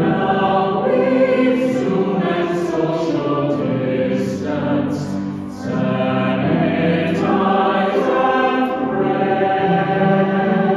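Small mixed choir singing in parts, with a brief pause between phrases about five and a half seconds in.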